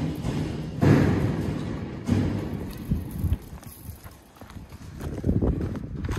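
Lion cubs at play: a handful of irregular knocks and scrapes, with the strongest one about a second in.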